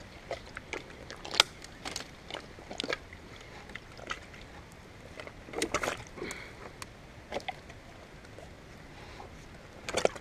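Footsteps and hand-holds scrambling over a pile of dry driftwood sticks and logs: irregular snaps, cracks and knocks of wood, with a quick cluster of them a little past the middle.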